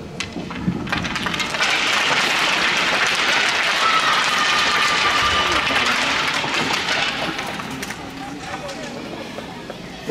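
Applause: many hands clapping, swelling about a second and a half in, holding steady, then fading toward the end.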